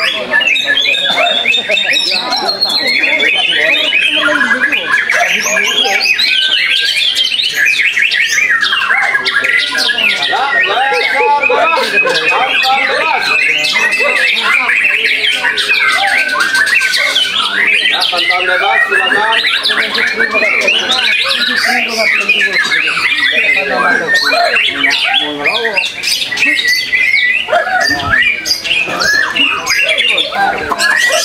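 White-rumped shama (murai batu) singing a loud, unbroken stream of quick varied whistles and harsh chattering notes, with other birds' song overlapping it throughout.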